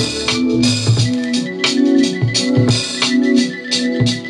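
An electronic beat played back from a Native Instruments Maschine: a looping drum pattern of low kicks and bright hi-hat and snare hits, about three hits a second, under sustained organ-like keyboard chords.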